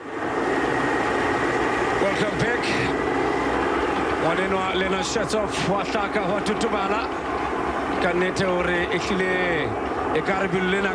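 Steady vehicle engine noise, with indistinct voices over it from about four seconds in.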